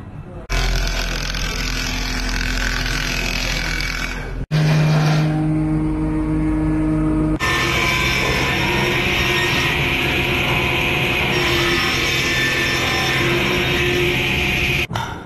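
Electric woodworking machines running as willow is machined into cricket bat blanks: a steady motor hum under the noise of the cutting. The sound changes abruptly three times, about half a second, four and a half seconds and seven and a half seconds in.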